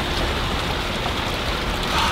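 Small fountain jets splashing steadily into a shallow pool.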